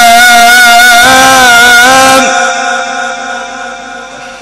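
A male Qur'an reciter, amplified through a microphone, holds one long, ornamented melodic line with a wavering pitch in the Egyptian tajwid style. The note ends a little past two seconds in and fades away in the room's echo.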